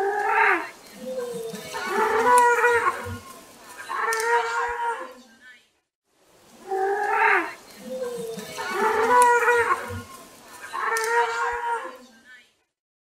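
Pelican calls: three drawn-out, hoarse calls in a row. The same short recording is played twice over.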